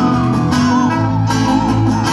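Live band music: a bowed musical saw sings a wavering high melody with wide vibrato over strummed acoustic guitar and electric bass.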